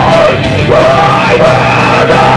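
A live band playing loud rock, with yelled vocals over the instruments, without a break.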